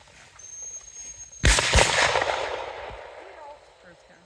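Two gunshots in quick succession, about a third of a second apart, the sound echoing and dying away over the following second or two.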